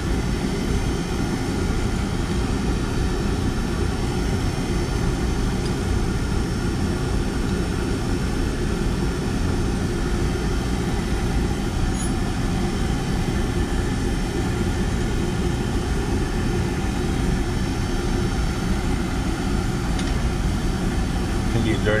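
Oil-fired boiler's burner running steadily, its motor and fuel pump giving an even, unbroken low roar with a steady hum.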